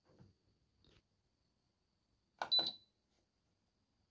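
A steam oven's control panel giving one short electronic beep about two and a half seconds in, as a setting is keyed in.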